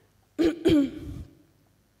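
A woman clearing her throat with two quick coughs, about half a second in.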